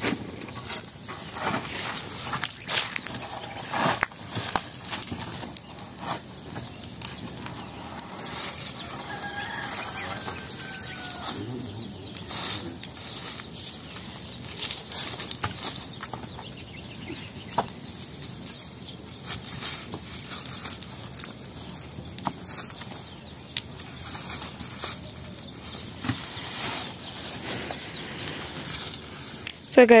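Wood fire burning in the firing hole of a clamp kiln of mud bricks, with scattered crackles and sharp clicks, and the knocks and rustle of firewood being poked and pushed in over dry straw.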